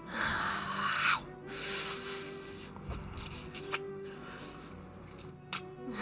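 ASMR kissing and mouth sounds close to the microphone: two breathy bursts in the first two seconds, then a few short wet lip smacks, over quiet background music.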